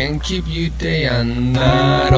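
A song from a band: a singer's voice glides up and settles into a long held note about a second in, over sparse backing with a steady bass.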